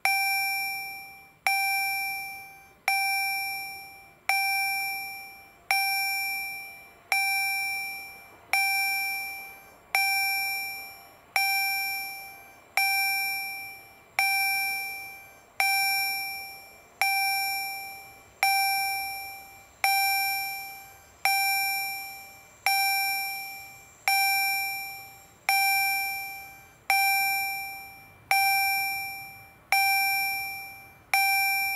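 Railway level-crossing warning bell striking at an even pace, about one ring every one and a half seconds, each ring decaying before the next. It sounds while the crossing signals show red, warning road users that a train is approaching.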